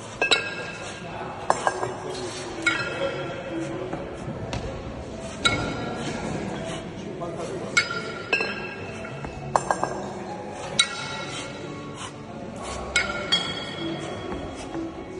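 A pair of 14 kg kettlebells clinking against each other during long-cycle clean-and-jerk reps: sharp metal knocks with a short ring, about ten in all, some single and some in quick pairs.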